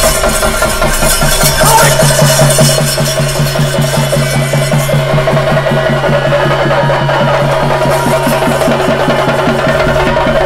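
Percussion-led music: fast, even drumbeats at about four a second over a steady, sustained low note.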